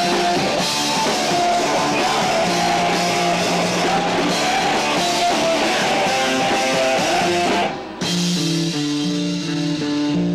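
Hardcore band playing live, loud distorted guitars over drums and crashing cymbals. Near the end the drums and cymbals drop out suddenly and the guitar carries on with a repeating riff.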